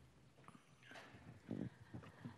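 Near silence: hearing-room tone with a few faint clicks and a brief faint murmur about one and a half seconds in.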